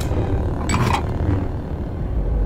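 Animated sci-fi sound effects: a steady low rumble, with a short bright swish about two-thirds of a second in.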